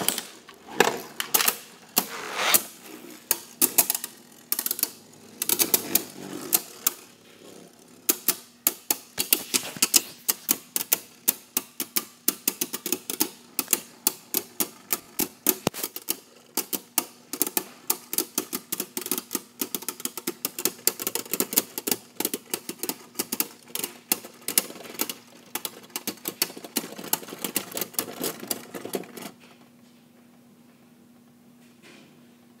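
Arc Bahamut and Tornado Wyvern Beyblade Burst tops launched into a plastic stadium and clashing. A loud clatter comes at the launch, then scattered hits. From about eight seconds in there is a fast run of sharp clicks, several a second, as the spinning tops knock against each other, and it stops suddenly near the end.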